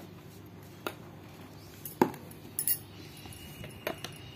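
Four scattered clinks of a glass spice jar against a stainless-steel mixing bowl as spice powder is tipped in, the loudest about two seconds in.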